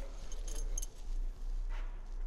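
A few light metallic clinks about half a second to a second in, from small metal parts being handled, over a low steady hum.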